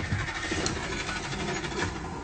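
A low, steady engine-like rumble with a faint hiss over it.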